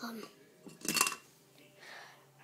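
A single sharp clink of hard objects knocked together, with a brief ring, about a second in.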